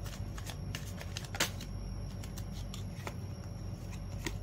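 A tarot deck being shuffled and handled by hand: a run of soft card flicks and clicks, the sharpest about a second and a half in, over a steady low hum.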